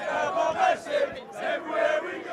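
Group of West Ham football supporters chanting together, many men's voices shouting a terrace chant in repeated phrases.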